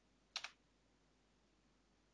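A single short computer key click about a third of a second in, made of two close strokes, as a presentation slide is advanced; otherwise near silence.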